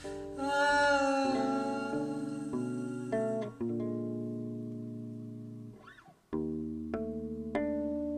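Solo electric bass guitar playing plucked notes and chords, each left to ring out, with a held sung note with vibrato about half a second in. The playing dies away almost to nothing just before six seconds, then picks up again with fresh notes.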